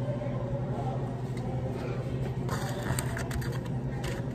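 Rubbing and scraping handling noise of a camera being moved and set in place, heaviest a little past halfway through, over a steady low hum.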